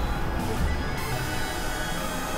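Experimental electronic synthesizer music: dense, noisy drones with a heavy low end. The highest frequencies thin out for about the first second, then return.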